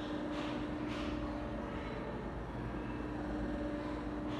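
Steady background hum with a low, even tone running under it, with two faint brief hisses early on.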